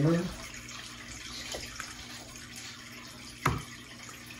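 Steady trickle of water from an aquarium, with a single sharp knock about three and a half seconds in.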